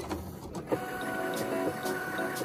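Cricut cutting machine running a cut on a printed label sheet: the carriage motors whine in short steps that change pitch as the tool head moves.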